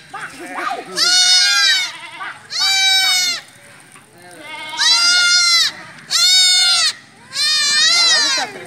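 Goats bleating: about five long, high-pitched bleats in turn, roughly one every second and a half.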